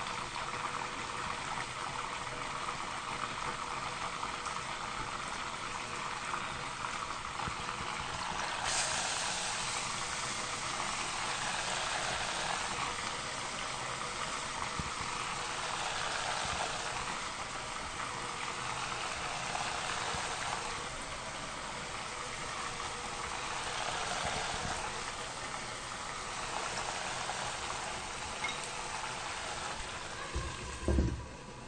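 Deep-frying oil mixed with a large amount of water, bubbling and sizzling violently as floured chicken pieces fry in it: the water in the oil is boiling off. A steady dense hiss that grows louder about nine seconds in.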